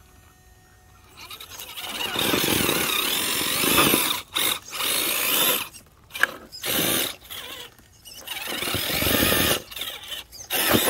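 RC rock crawler's electric motor and geared drivetrain whining in repeated throttle bursts as the truck climbs a rock ledge, with tires working against rock and dirt. It is near silent for the first second or so, then the bursts come with short breaks between them.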